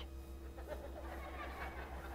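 Faint room tone in a pause between spoken phrases, with a low steady hum and a faint thin steady tone.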